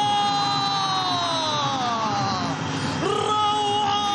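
A commentator's long, drawn-out goal shout, held on one high note and sliding slowly down in pitch for about two and a half seconds. A second held shout starts about three seconds in.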